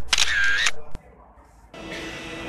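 A short electronic transition sound effect from the video editing, lasting under a second with a pitch that dips and comes back up, followed by a single click. Background music starts near the end.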